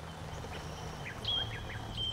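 Outdoor summer ambience: short bird chirps over steady insect trilling and a low background hum, with a thin high steady whistle coming in about a second in.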